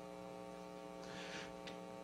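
Steady electrical mains hum, a stack of even tones, with a faint short hiss about a second in and a small click near the end.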